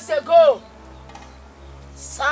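Crickets chirring steadily with a thin high-pitched tone. Two short, loud pitched calls, each falling in pitch, sound in the first half-second.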